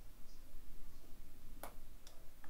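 A single short, sharp click about three quarters of the way through, over quiet room noise.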